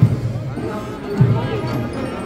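Marching band playing: two heavy bass drum beats about a second apart under sustained brass notes.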